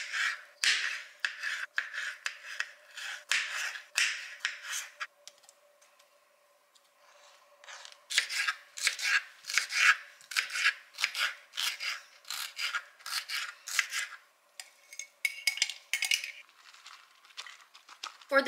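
Kitchen knife slicing olives and cherry tomatoes, then bell pepper, on a plastic cutting board: a run of quick cuts knocking on the board, a pause of a few seconds, then another long run of quick cuts.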